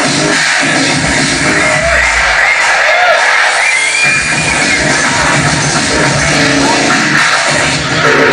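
Loud hardcore electronic music played over a club sound system, dense and distorted, with the bass dropping away for a moment around the middle before coming back in.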